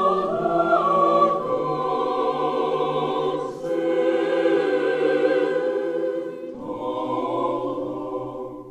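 Choir singing slow, sustained chords with vibrato. The phrase breaks off briefly about three and a half seconds in, and a new chord with low voices comes in near the end.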